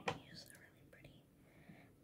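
Soft whispering by a young girl, starting with a sharp click and fading out in the second half.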